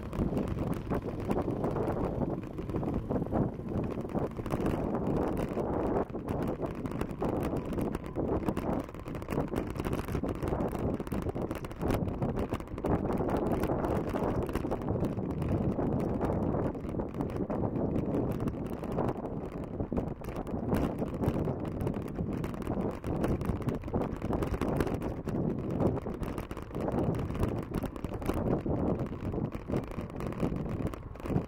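Wind buffeting the microphone of a camera on a moving bicycle: a steady, flickering rush of noise with no break.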